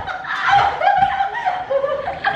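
Women laughing together, a run of short repeated laughs.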